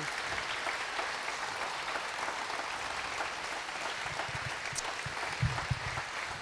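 Congregation applauding steadily, with a few low thumps near the end.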